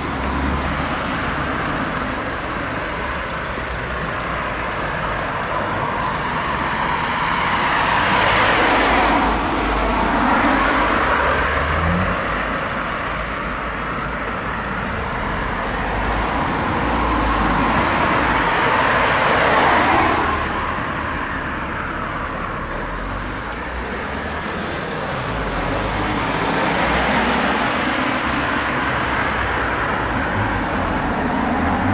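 Road traffic: cars driving past close by on a town street, with steady tyre and engine noise that swells and fades as each one passes, several times over.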